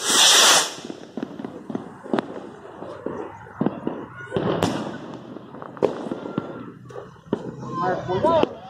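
Fireworks going off: a loud hiss from a ground firework spraying sparks in the first second, then scattered sharp bangs and crackles, the strongest at about four and a half seconds as an aerial shell bursts.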